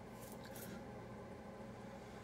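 Quiet room tone with a faint, soft rustle in the first half second.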